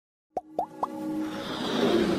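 Intro sound effects for an animated logo: after a moment of silence, three quick pops about a quarter second apart, each sliding up in pitch, then a swell of music and hiss that keeps building.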